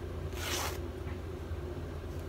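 A short papery rip about half a second in, a piece being torn off a shop towel, over a steady low hum.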